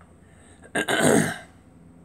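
A man coughs once, a short hoarse burst about a second in.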